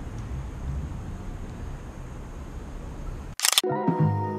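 A low steady background rumble, then about three and a half seconds in a short, loud run of several quick DSLR camera shutter clicks. Music starts right after the clicks.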